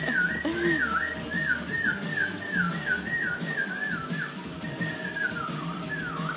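Springer spaniel whining, a high, wavering whine that dips and rises about two or three times a second, then drawn out into a longer falling note before quickening again near the end. It is the sound of the dog's frustration at the fish it cannot reach.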